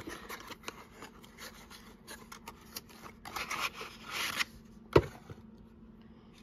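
Cardboard toy-car box being handled and opened: light scratchy rustling and scraping of cardboard as the inner plastic tray is worked out, heaviest a little past the middle, with one sharp click about five seconds in.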